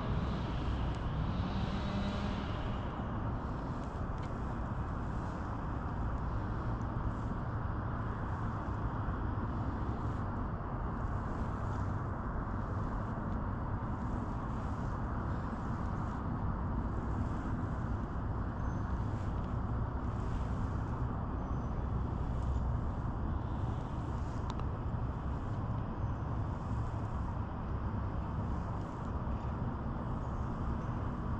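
Steady low hum of an Old Town ePDL 132 kayak's battery-assisted pedal drive pushing the kayak along, with a water rush underneath.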